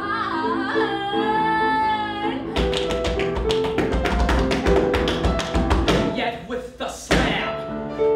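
Musical-theatre performance with piano: a young woman's voice holds a long sung note with vibrato. About two and a half seconds in, the audio cuts to a fast, steady run of sharp percussive taps over piano chords, with a brief dip and a loud burst shortly before the end.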